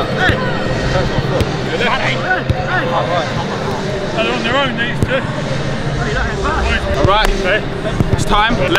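Several footballers' voices calling and chattering across an open pitch, not one clear speaker, with a few sharp thuds of footballs being kicked during a warm-up.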